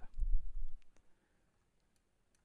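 A low bump in the first half second, then a few faint computer mouse clicks about a second in.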